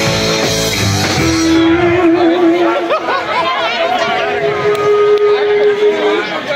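Live rock band playing loudly, then the bass and drums drop out about a second and a half in, leaving electric guitar holding long sustained notes, the first with a wavering vibrato, over crowd chatter.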